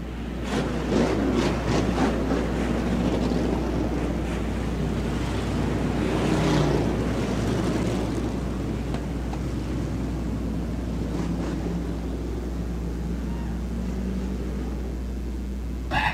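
A pack of V8 hobby stock dirt-track cars running at low speed in formation on a pace lap, a steady mixed engine rumble that swells about six seconds in.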